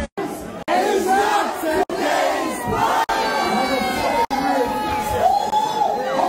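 A party crowd shouting and cheering, many voices overlapping, with no backing music. The sound is cut by several brief dropouts about a second apart.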